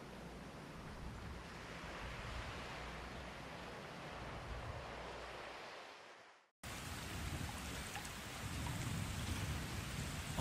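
Faint steady background noise with no tune or voice, fading out about six seconds in. After a brief dead silence, a similar faint noise comes in as the next recording begins.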